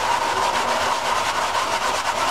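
An Evinrude/Johnson outboard carburetor float bowl being rubbed in circles on 80-grit sandpaper laid on a flat stainless steel bench, giving a steady scraping. The bowl's gasket face is being lapped flat to close a slight air gap, a warp, under it.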